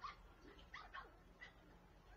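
Faint, short whimpering calls from a dog, several in quick succession.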